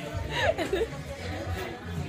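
Women laughing, over the chatter of a crowd and background music.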